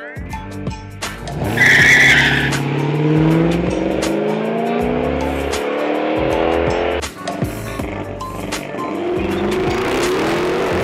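A car launching hard down a drag strip: a short tire squeal about a second and a half in, then the engine revving up through the gears in a series of rising sweeps.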